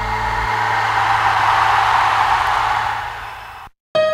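A steady rushing noise over a held low note, swelling and then fading away about three and a half seconds in, followed by a moment of silence as the song ends.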